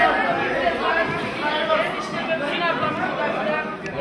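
Several people talking at once, overlapping conversational chatter among a crowd of guests.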